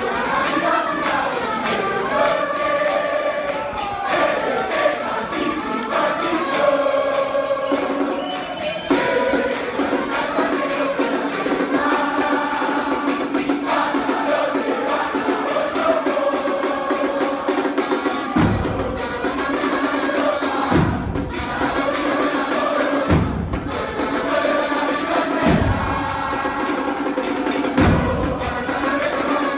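Soccer fans' mass chant sung together with a stadium brass-and-drum band of trumpets, trombones and bass drums, a dense crowd of voices over the brass. Deep thumps stand out a few times in the second half.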